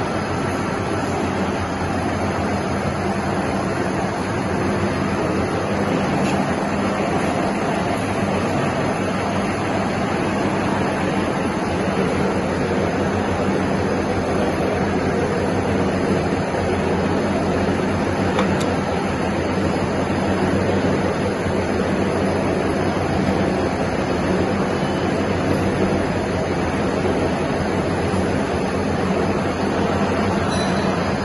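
Large Kirloskar centre lathe running steadily with its spindle at slow speed: an even machine hum under a steady wash of mechanical noise, with no change in pace.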